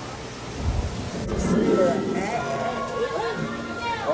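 Indistinct voices in a busy room, with a short low rumble of handling noise on the phone's microphone just before a second in.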